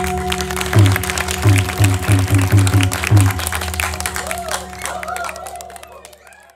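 Balinese gamelan playing the closing of a Jauk dance piece (tabuh bebarongan): held metallic tones under a quick run of deep strokes. The music then thins and fades out near the end.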